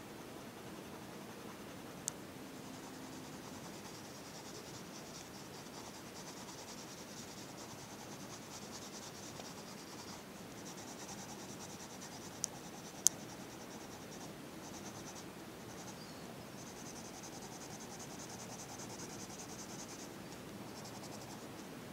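Colour pencil scratching on paper in rapid back-and-forth shading strokes, broken by short pauses. A few sharp clicks stand out, the loudest about 13 seconds in.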